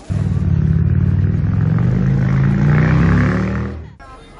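A motor vehicle engine running loud and close, cutting in suddenly, its pitch creeping up as it builds, then fading out just before the end.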